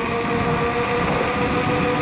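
Kukirin G3 Pro electric scooter's dual motors whining steadily under load while climbing a hill at about 50 km/h, over a steady rush of wind and road noise.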